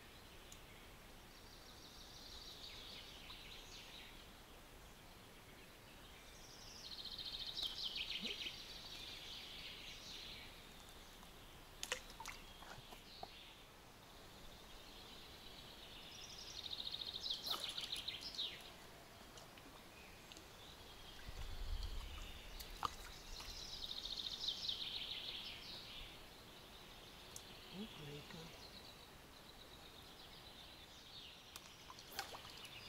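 Faint songbird song: a high, rippling phrase of about two seconds, repeated four or five times several seconds apart, with a few light clicks between.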